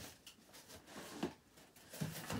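Faint handling of a cardboard shipping box being brought onto a table: a few soft knocks and scuffs.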